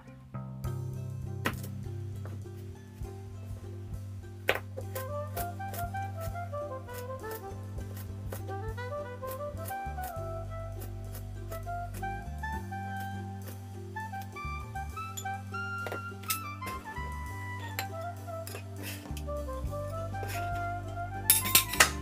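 Instrumental background music: a melody in runs of notes that climb and fall, over a steady bass line. A few sharp clicks are scattered through it, with a cluster of them near the end.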